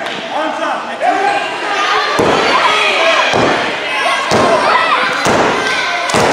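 Heavy thuds about once a second, starting about two seconds in, over a crowd shouting in a large hall during a pro wrestling match.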